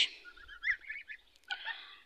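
Goslings peeping softly: a scatter of short, high calls, with a lull just past the middle.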